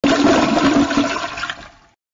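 A toilet flushing: a loud rush of water that starts abruptly and fades away after about a second and a half.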